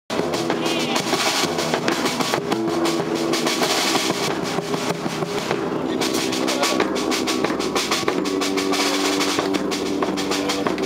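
Samba-style percussion ensemble playing: surdos struck with sticks, a drum kit and a bass drum in a dense, fast rhythm, with held pitched notes sounding over the drums.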